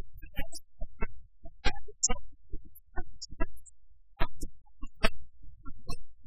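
Sanxian and pipa plucked in a slow, sparse passage of Suzhou tanci, with single plucked notes and short strums at uneven intervals.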